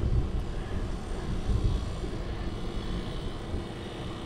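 Low, unsteady rumble of wind buffeting the microphone of a camera riding along on a bicycle, with no clear events standing out.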